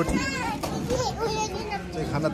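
Children's high-pitched voices talking and calling out, over the general chatter of a crowd.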